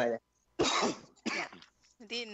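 A person coughing: a sharp, harsh cough about half a second in, followed by a second, shorter one.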